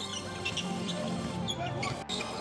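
Basketball shoes squeaking on a hardwood court in short high chirps during live play, over steady background music.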